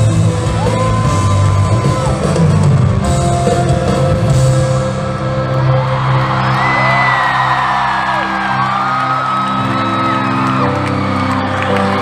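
Live band holding a sustained chord in an arena while the crowd cheers, with fans letting out high, drawn-out screams, most of them in the second half.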